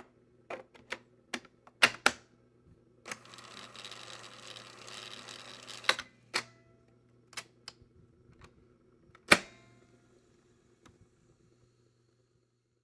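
Old-recording surface noise: irregular sharp clicks and pops over a low steady hum, with about three seconds of hiss in the middle.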